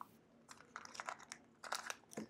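Faint crinkling of thin plastic wrapping around a capsule toy's parts, in scattered short crackles as it is handled.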